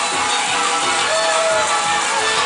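Live amplified band music: a fiddle plays over electric bass guitar and dhol drum, with one held fiddle note about a second in.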